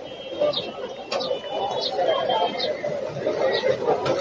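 Indistinct background voices, with short high bird chirps repeating about once a second.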